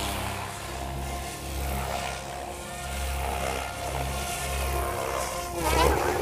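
Electric SAB Goblin RC helicopter in flight, its motor and rotors whining and the pitch wavering up and down as it manoeuvres. A low rumble swells and fades about once a second, and the sound grows louder with sweeping pitch near the end.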